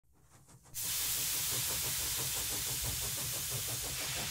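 Steam hissing, starting suddenly just under a second in and then running steadily, with a faint fast ripple underneath.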